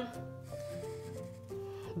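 Soft background music: a simple melody of held single notes, stepping to a new pitch every third of a second or so.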